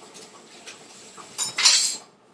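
Dishes and cutlery clattering while being washed up, with a louder clatter near the end.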